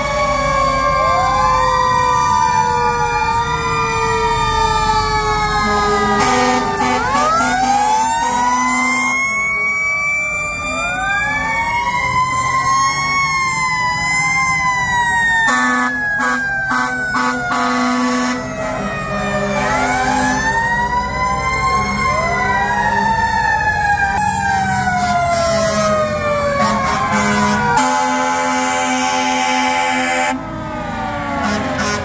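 Several fire engine sirens wailing at once, their rising-and-falling tones overlapping throughout. A few long, low horn blasts break in, around 7 s, 16 s and near the end.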